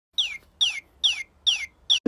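Five short, high, bird-like chirps, each sliding down in pitch, in an even rhythm of a little over two a second.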